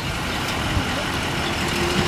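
Steady engine and road rumble heard from inside a moving vehicle in slow traffic.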